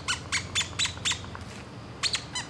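Red rubber squeaky dog toy squeezed by hand in quick repeated squeezes: five short, high-pitched squeaks in about a second, then it stops.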